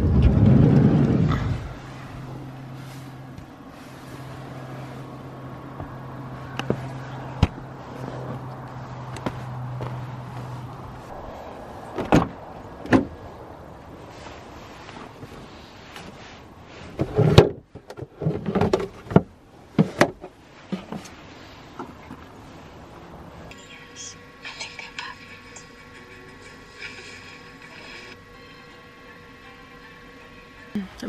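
A van door opening with a loud thud, then a steady low hum for about ten seconds. Scattered sharp knocks and clatters follow as things are handled inside the van.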